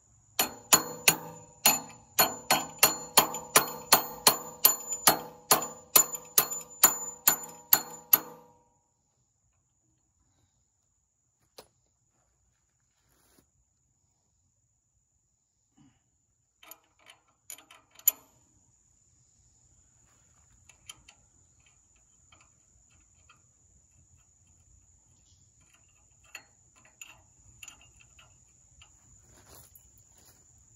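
Sharp metallic clicking with a ringing tone, about three clicks a second, from hand work on the hitch hardware of a compact tractor's three-point hitch. It stops abruptly about eight seconds in, and a few faint clicks and handling noises follow.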